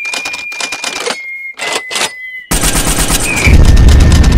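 Intro sound effects: a rapid clatter of gunfire-like shots with a thin steady high tone over it, breaking off briefly a little after a second in. The clatter comes back louder at about the two-and-a-half-second mark, and a deep explosion boom joins near the end.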